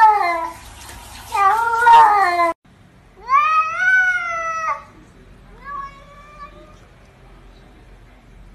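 A tabby cat's long, drawn-out meow starting about three seconds in, rising at first and then held, followed by a shorter, fainter meow about two seconds later. Before a sudden cut near the start, two wavering drawn-out calls sound over a hiss.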